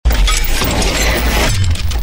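Sound-design effect of glass shattering over a deep bass rumble, starting abruptly and held loud for about two seconds.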